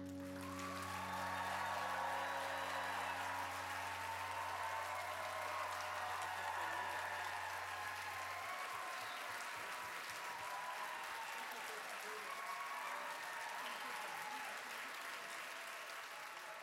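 Audience applauding at the end of a song, with some voices in the crowd. A low note from the band's final chord rings on underneath and stops abruptly about eight seconds in.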